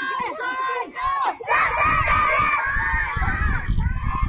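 A group of schoolchildren shouting a Hindi slogan together. The chant breaks briefly about one and a half seconds in, then comes back louder and is held longer.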